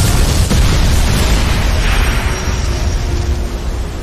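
Cinematic explosion sound effect: a loud, deep, rumbling blast that eases slowly in the second half.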